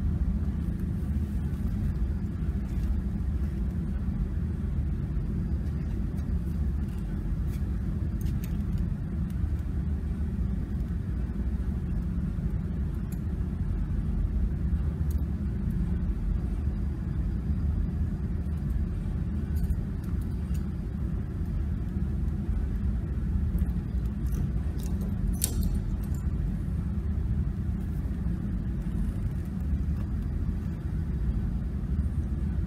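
Steady low rumble of running machinery, unchanging throughout, with a brief light click near the end.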